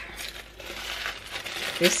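Thin tissue-paper sewing pattern piece rustling and crinkling as it is handled and picked up off the table.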